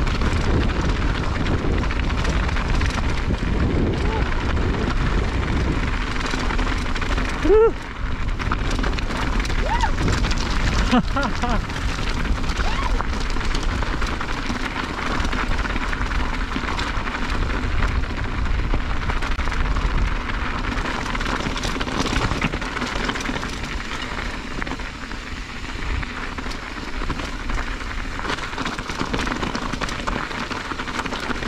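Mountain bike rolling down a rough trail, with a steady rumble of wind on the camera microphone and the rattle of tyres over the ground. A short rising squeak comes about seven seconds in, and a few fainter ones follow a few seconds later.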